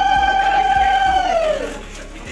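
Conch shell (shankha) blown in one long steady note that sags in pitch and dies away near the end, sounded for the bride and groom's welcome ritual.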